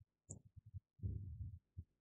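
A quiet room with a few faint low thuds and one small click. The thuds cluster about a second in.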